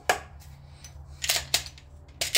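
Sharp clicks from handling a pistol: one click just after the start, then two quick clicks about a second later.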